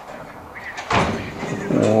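A single short, sharp knock about a second in, then a man's voice starting near the end.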